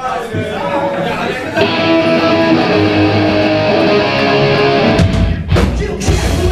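Ska-punk band playing live through a club PA: electric guitar starts the song, and the full band comes in with much heavier low end about five seconds in.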